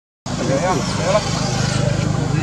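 After a brief silence, an engine runs with a steady, evenly pulsed low hum, with short rising-and-falling vocal calls over it about half a second to a second in.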